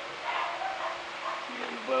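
A baby fussing and babbling softly, with a louder voiced sound near the end.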